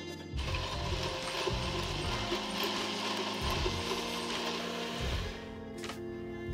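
NutriBullet personal blender motor running as it blends a smoothie. It starts about half a second in and cuts off after about five seconds.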